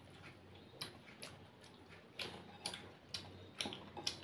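Close-up eating sounds of a rice and fish curry meal eaten by hand: short, sharp, wet clicks at an uneven pace of about two a second, getting louder in the second half.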